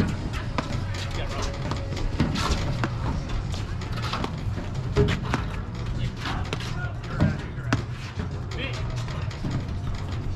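A paddle rally: irregular sharp knocks of solid paddles striking the ball and the ball bouncing on the court, about a dozen over the stretch, with a steady low hum underneath.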